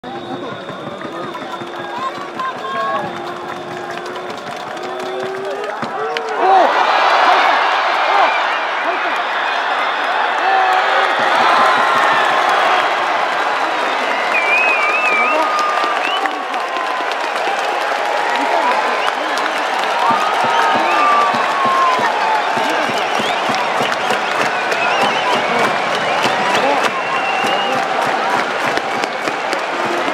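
Ballpark crowd cheering a home run: quieter crowd sound, then a sudden swell of cheering and shouting about six seconds in, just after a brief crack of the bat hitting the ball. Loud cheering, clapping and many voices carry on afterwards.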